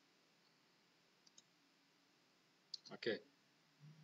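Near silence: quiet room tone with two faint clicks about a second in.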